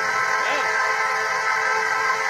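Steady held synthesizer chord of several notes played from a keyboard.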